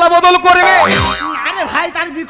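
A man's voice holds a long, steady note, then about a second in a comic sound effect drops sharply in pitch with a brief burst of noise, and quick spoken syllables follow.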